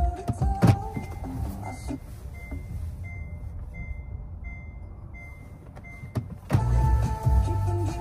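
Car cabin noise from a moving car, with a row of about eight short high beeps evenly spaced, a little over one a second and growing louder. Background music fades out near the start and comes back loudly about two-thirds of the way in.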